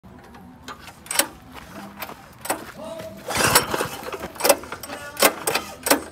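A string of sharp clicks and knocks, about seven of them at uneven spacing, from hands working the controls and parts of a gas-engine plate compactor. The engine is not running.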